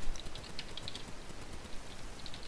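Typing on a computer keyboard: a quick run of keystrokes in the first second, then a pause.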